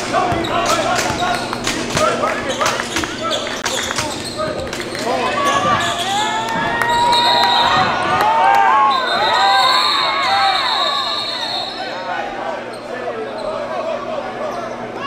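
A basketball dribbled on a hardwood gym floor, several sharp bounces in the first few seconds, then shouting voices as players scramble, and a referee's whistle blown twice, a short blast about seven seconds in and a longer one a couple of seconds later.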